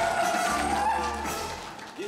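Live singing with accompaniment at the close of a song: a sung note bends and then fades away as the music dies down.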